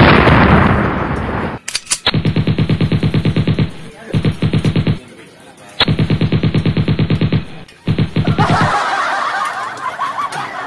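Rapid machine-gun fire in three long bursts of about nine shots a second with short gaps between them, opening with a loud blast that dies away over a second or so. It sounds like a gunfire sound effect or game audio rather than anything in the room. Near the end it gives way to laughter.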